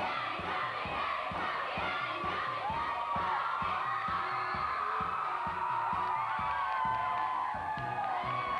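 A chorus of women singing and shouting together over recorded backing music with a steady beat.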